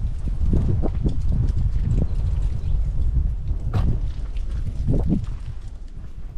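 Wind buffeting the microphone with a steady low rumble, over irregular footsteps on a concrete walkway.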